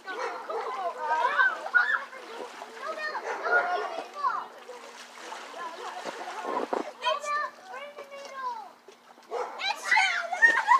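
Children's high-pitched voices shouting and calling over splashing water from play on a pool floatie, with a steady low hum underneath.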